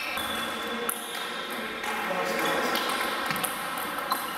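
Between points in a large sports hall: people talking in the background, with a few sharp table tennis ball clicks from play at other tables.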